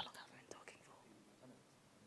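Near silence in a hall, with faint whispering in the first second or so.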